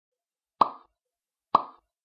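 Two short pop sound effects, the first about half a second in and the second about a second later, each dying away quickly: the button-click sounds of a subscribe-and-like animation.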